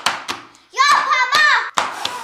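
A person blowing hard at candle flames: a gust of breath at the start and another near the end, each fading out over about half a second. Between them comes a short high-pitched vocal exclamation.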